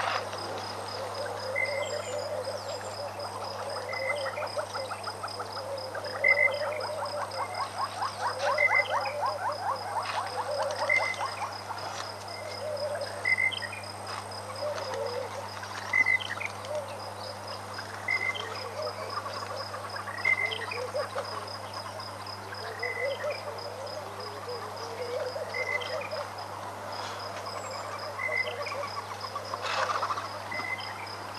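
A chorus of frogs calling at a waterhole: short croaks repeating every second or two at a couple of different pitches, with a run of rapid clicking pulses a third of the way in. A high, evenly pulsed insect trill runs behind them.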